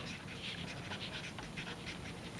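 Felt-tip marker writing on paper: faint, irregular scratchy strokes as letters are drawn.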